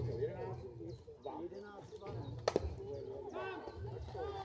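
A bat hitting a slowpitch softball: one sharp crack about two and a half seconds in, heard over people talking.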